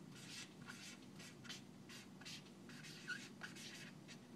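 Felt-tip marker writing on a flip chart: a run of short, faint strokes, with a brief squeak about three seconds in, over a steady low room hum.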